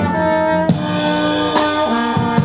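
Brass quintet of trumpets, French horn, trombone and tuba playing a medley arrangement of pop-rock songs in sustained chords, with drum-kit hits marking the beat.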